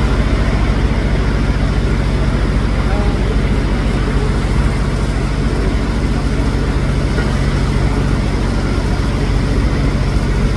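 Diesel engines of parked fire trucks running steadily, a loud, constant low hum.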